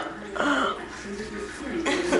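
Faint, indistinct voices in a small room, with a short rustle about half a second in.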